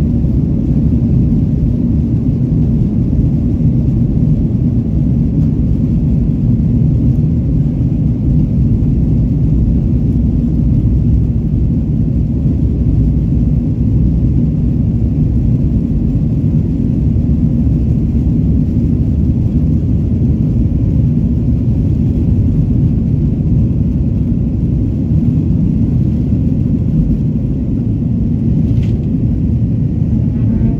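Boeing 737 jet engines and runway rumble heard from the cabin over the wing during the takeoff roll: a loud, steady, deep rumble.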